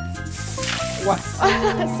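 A spray of water from a pump jet onto a shoe being washed of manure, lasting about a second, over background music, with a surprised shout about a second in.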